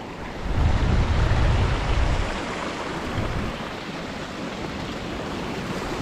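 Creek water rushing over a small rock ledge, a steady hiss. Wind buffets the microphone with a low rumble from about half a second in until a little past two seconds.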